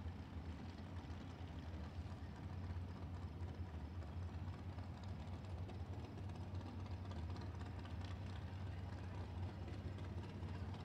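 Steady low rumble of distant motors running, under faint outdoor background noise.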